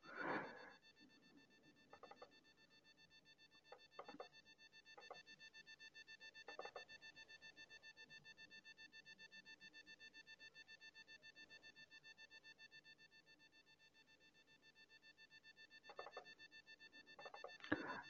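Near silence: room tone with faint steady high-pitched electronic tones and a few faint, brief clicks.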